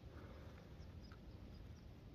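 Near silence: faint outdoor background with a couple of faint ticks.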